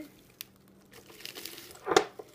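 Salad greens being handled and pressed down by hand: a single light click early, then a faint leafy rustle that grows over the second half, ending in a brief louder burst.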